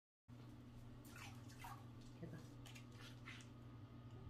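An elderly, weakened dog giving a few short, faint whimpers that fall in pitch while being bathed in a plastic tub, over a steady low hum.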